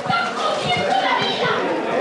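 A woman shouting angrily in Spanish in a high, strained voice, yelling that they are ruining her life.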